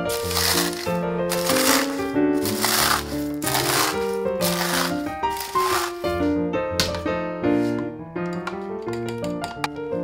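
Dry cornflakes crushed by a gloved hand in a glass dish: a series of crunches a little under a second apart, then a few lighter crackles after about six seconds. Ragtime piano music plays throughout.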